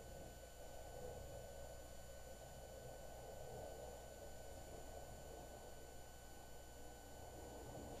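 Very quiet, steady hum and hiss with thin steady high tones, the background noise of an old home videotape recording; nothing else stands out.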